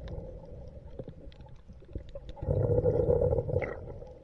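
Muffled underwater sound heard through a camera's waterproof housing: a low rushing surge swells about two and a half seconds in and lasts about a second, with faint clicks and ticks in the quieter stretch before it.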